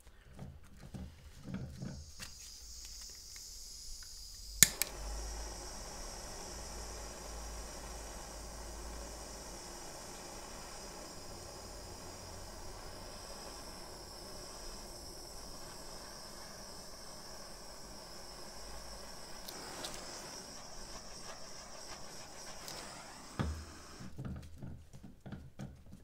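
Handheld butane torch clicked alight about five seconds in and hissing steadily as it is passed over wet acrylic pour paint to bring up cells, then shut off with a low thump a few seconds before the end.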